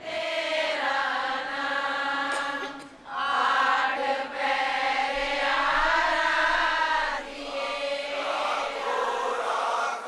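A congregation singing a devotional chant together in unison, in long held phrases with short breaks about three seconds in and again about seven seconds in.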